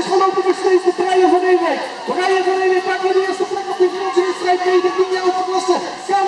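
Speech: a man commentating on a BMX race, talking throughout with no other sound standing out.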